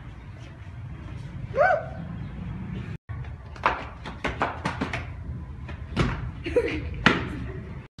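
Footsteps on concrete stairs: a string of sharp, uneven knocks as someone walks down, over a low hum. A short rising voice sound comes before them.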